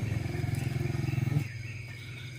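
A low, fast-pulsing animal call that stops about one and a half seconds in, over a steady high-pitched insect trill.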